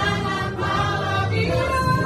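A group of voices singing together in chorus.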